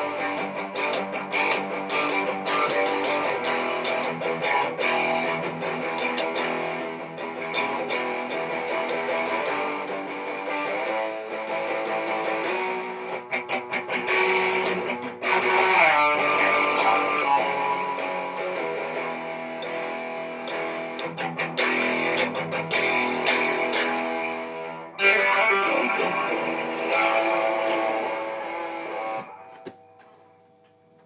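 Squier Deluxe Hot Rails Stratocaster electric guitar with humbucking Hot Rails pickups, played through a small amp on its distortion channel: a run of picked notes and chords with a pitch bend about halfway and a hard-struck chord near the end, after which the notes ring out and fade.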